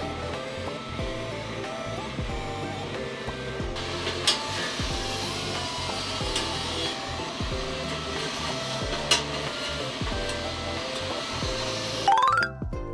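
Background music with a steady, repeating bass line. Three short sharp taps stand out from it, about four, six and nine seconds in.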